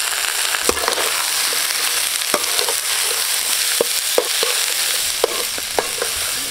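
Cauliflower florets frying in hot oil with shallots and curry leaves, giving a steady sizzle in a metal pan. A metal spoon clinks and scrapes against the pan at irregular moments as the florets are stirred.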